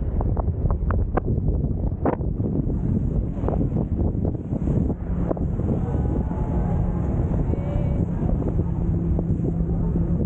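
Wind buffeting the microphone. About halfway through, a speedboat's engine comes in as a steady low drone while the boat runs past at speed.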